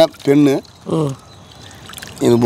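A man says a few short words; between them and after them, water splashes and trickles as a hand scoops small fish out of a net in the water.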